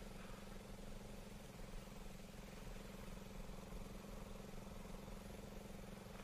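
Faint, steady low drone with a constant pitch, typical of an engine idling some way off.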